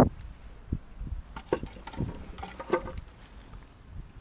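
A thump at the start, then scattered light knocks, clicks and scrapes as a loudspeaker cabinet and its grille cover are handled.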